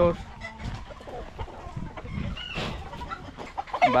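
Gamefowl chickens clucking in their pens, scattered calls at a moderate level.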